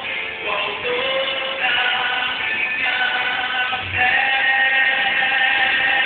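A male gospel singer singing with musical accompaniment, drawing out long held notes, the longest in the second half.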